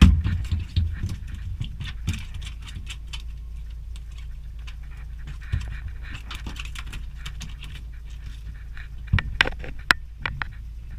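Sea robin out of the water making low croaking grunts, strongest in the first second, drummed on its swim bladder. Scattered light taps run through it, with two louder knocks near the end.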